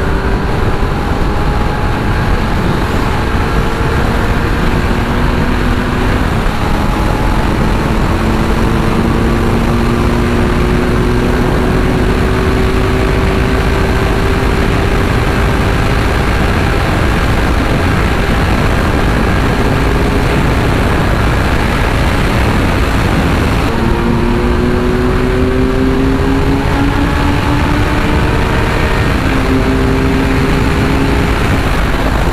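Kawasaki Z900 inline-four engine pulling at highway speed in top gear, its note climbing slowly and easing off a few times, most plainly about two-thirds of the way through. Heavy wind rush on the microphone runs under it.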